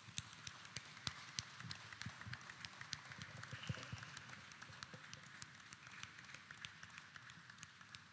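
Light, scattered applause: irregular sharp claps, several a second, over a soft wash of further clapping.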